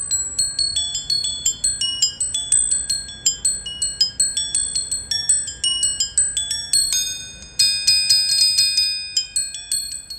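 Mallets striking the bars of a percussion sonic sculpture: a quick, free run of high ringing notes, several strikes a second, each left to ring into the next. The strikes crowd together into a denser flurry about three quarters of the way through.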